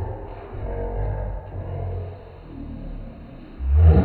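Slowed-down audio of a slow-motion replay: the game's sounds are stretched into a low, drawn-out rumble with smeared, deepened tones, swelling loudest just before the end.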